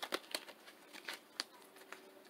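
Tarot cards being slide-shuffled by hand: a few faint, irregular snaps and clicks of card edges.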